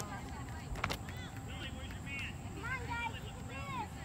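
Distant, wordless shouts and calls of youth soccer players on the field, several short calls in the second half. A single sharp knock comes about a second in.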